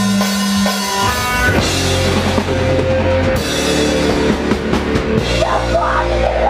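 Hardcore band playing live, heard from the stage: distorted electric guitars and a drum kit. A held low note rings for about the first second, then the full band comes in hard.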